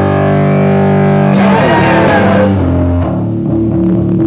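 Distorted electric guitar played through an amplifier: a held chord rings out, a wavering sweep comes in about a second and a half in, and a quieter sustained tone is left after about three seconds.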